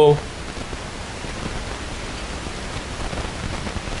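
Steady, even hiss of room tone, with the end of a spoken word at the very start.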